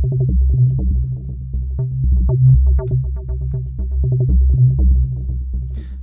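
Spectrasonics Omnisphere 2.6 software synth patch playing a rhythmic pattern of deep bass notes, several a second, pulsing under LFO modulation synced one-to-one. It fades away near the end.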